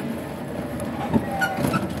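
Steady road and street-traffic noise while riding an electric scooter slowly through a city street, with a few faint short tones about a second and a half in.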